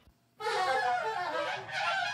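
Free-form reed horns, saxophone and bass clarinet, enter suddenly about half a second in, playing squealing, wavering lines together.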